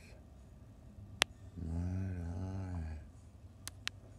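A man's low wordless hum, about a second and a half long, with a sharp click before it and two quick clicks near the end.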